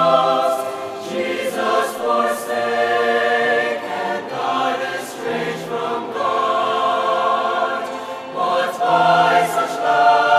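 Large mixed choir of men and women singing together in harmony, the phrases swelling and easing off every few seconds.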